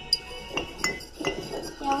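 About four sharp, irregular clinks of glass jars and a kitchen utensil knocking against glass as the jars of rice are handled.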